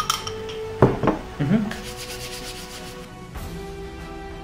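A spoon scraping and clinking in a ceramic bowl, with one sharp knock about a second in, over quiet background music.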